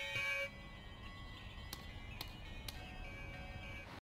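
Electronic doorbell chime playing a multi-note tune that cuts off abruptly about half a second in. Faint tones and three sharp clicks follow.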